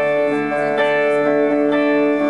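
Instrumental intro of a song played live on electric guitar and keyboards: sustained held chords that change a few times before the vocal comes in.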